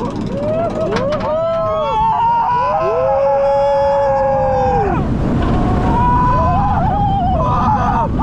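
Riders screaming on a steel hyper coaster's first drop: several overlapping long cries that rise and fall, the longest held for about two seconds, breaking off about five seconds in and starting again soon after. Underneath runs a steady rush of wind and the train on the track.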